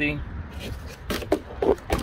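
Cardboard shipping box being handled and shifted, a series of short scraping and rustling sounds from the cardboard, the loudest near the end.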